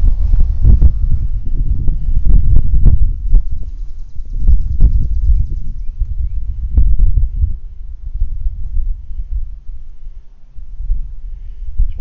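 Wind buffeting a handheld camera's microphone, with thumps of footsteps and handling as it is carried across the grass; it eases off in the last few seconds.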